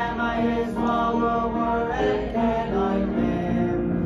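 Church congregation of men and women singing a hymn together, in long held notes.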